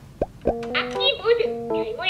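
A short pop effect, then a bright electronic children's melody of simple stepped notes with a cheerful voice over it.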